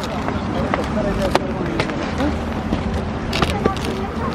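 Skis sliding and scraping over packed snow as a skier shuffles forward, with a steady low rumble and scattered sharp clicks, over faint chatter of people around.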